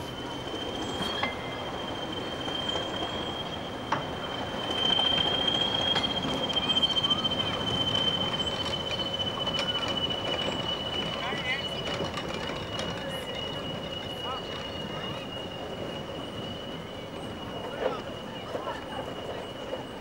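Slow train of goods vans and a diesel locomotive rolling over the crossing, its wheels squealing in one long, slightly wavering high whine over a steady rumble. It is loudest about five to eight seconds in, with a few sharp clicks from the wheels on the rails.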